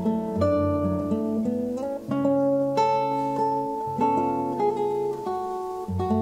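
Duo of nylon-string classical guitars playing together, plucked melody notes over chords, each note ringing on after it is struck.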